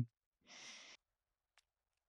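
A man's short, faint breath out, a soft sigh about half a second in, followed later by a single tiny click.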